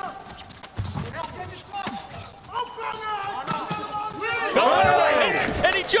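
Fight crowd in an arena: scattered sharp knocks in the first seconds, then many voices swelling into loud shouting and cheering about four and a half seconds in, the crowd's reaction to a one-punch knockout.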